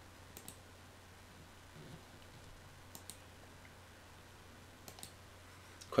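A few faint computer mouse clicks, each a quick press-and-release pair, near the start, about three seconds in and about five seconds in, over a low steady hum.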